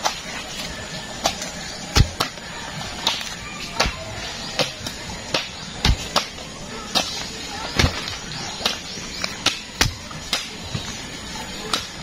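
Digging bar jabbed again and again into damp clay soil to dig out a post hole: a dull thud about every second, with lighter knocks and soil scraping between them.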